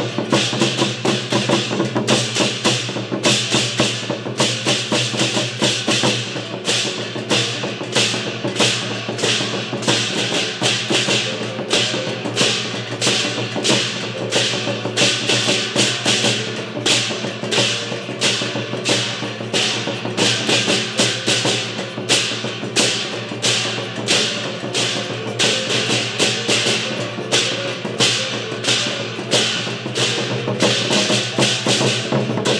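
Taiwanese temple-procession gong-and-cymbal ensemble playing a steady beat: hand cymbals clash about three times a second over the sustained ringing of gongs.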